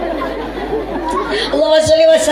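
Chatter of voices in a large hall, then about one and a half seconds in a woman's voice comes in over the loudspeakers, drawn out on long, level notes.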